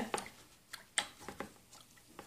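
Light, scattered clicks and taps of handling at a painting table, about half a dozen in two seconds.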